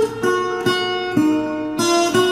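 Acoustic guitar picking a slow tango melody in single notes, about two a second, each note left to ring.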